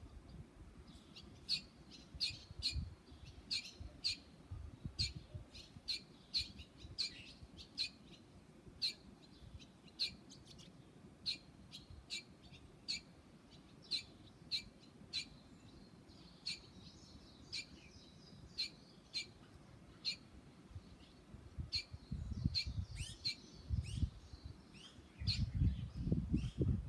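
Barn swallow fledgling calling: short, high chirps repeated about once a second. A low rumble comes in near the end.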